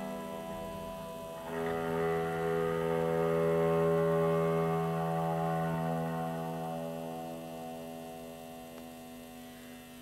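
Long sustained drone notes from an electric guitar played with a bow, with low bowed-string tones beneath. A fresh chord swells in about a second and a half in, then slowly fades away.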